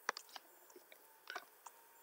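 A few faint, sharp clicks, irregularly spaced: a quick group just after the start, a few more about a second and a quarter in, then one more.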